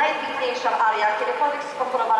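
Speech only: a voice continuing a sentence in Polish.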